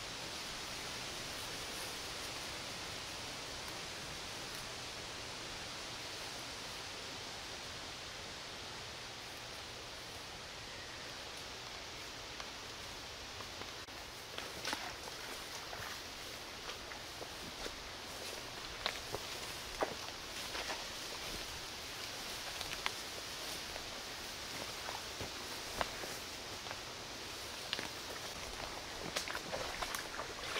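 Wind in the treetops as a steady hiss, joined from about halfway by footsteps through forest undergrowth, with scattered sharp snaps of twigs and leaves underfoot.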